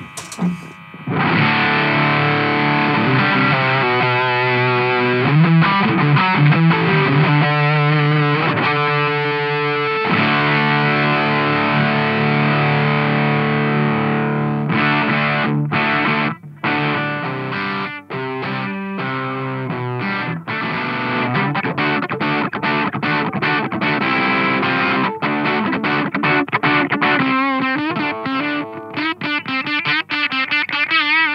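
Electric guitar played through a Doomsday Effects Cosmic Critter Fuzz pedal, heavily distorted. Long ringing fuzz chords start about a second in, then give way to shorter, choppier chords from about halfway, with the tone shifting as the pedal's tone knob is turned.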